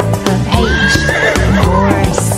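A horse whinny sound effect over bouncy children's song music. The whinny starts about half a second in and wavers for roughly a second.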